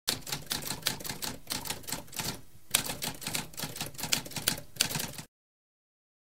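Typewriter typing: a fast, uneven run of key strikes with a brief pause about halfway through, stopping abruptly about five seconds in.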